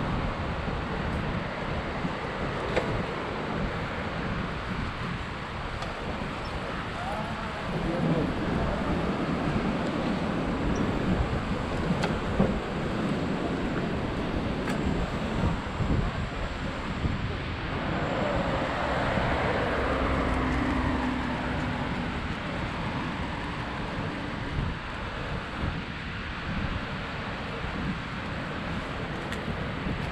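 Wind rushing over the microphone of a camera on a moving bicycle, with road traffic passing alongside; a louder vehicle pass swells and fades about two-thirds of the way through.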